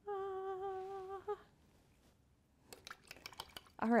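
A woman humming one held note for about a second, with a slight waver in pitch. Then a few light clicks and taps near the end.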